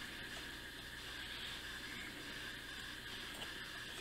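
Faint, steady soft rustle of a cloth wiping stain off a small clay sculpture, over quiet room hiss.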